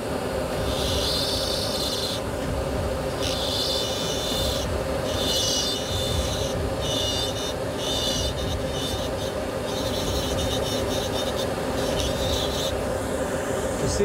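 Dental lab micromotor handpiece with a carbide bur grinding a PMMA prototype tooth. A high, scratchy grinding sound comes in repeated passes of one to three seconds, over a steady motor hum.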